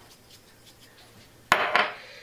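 Pepper shaker shaken over sliced potatoes in a glass baking dish, giving faint, quick rattles, then a single sharp knock about one and a half seconds in as the shaker is set down hard on the countertop.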